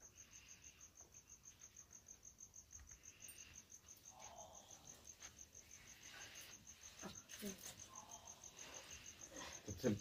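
Faint cricket chirping: a steady, even high-pitched pulse about six or seven times a second, with faint murmured voices in the background.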